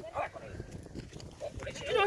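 A dog whining in short rising cries near the end, with its head at a rabbit burrow, after a man's brief remark at the start.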